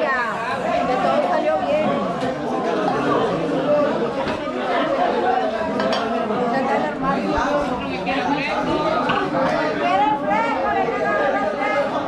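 Several people talking over one another in a lively mix of voices, with a few light clinks of dishes.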